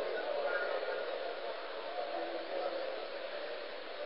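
Faint, indistinct murmur of audience voices over the steady hiss of an old, muffled recording, in a pause between recited verses.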